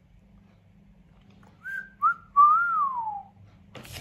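A person whistling three notes: two short ones, then a longer note that rises a little and slides down in pitch.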